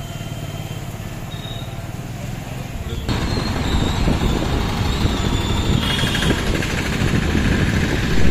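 A steady low rumble, then about three seconds in a sudden jump to louder street traffic heard while moving along a busy road. Motorcycle and scooter engines run close by.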